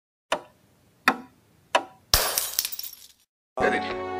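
Three sharp knocks about 0.7 s apart, then a loud crash that rattles on for about a second, as an intro sound effect; music with a beat starts near the end.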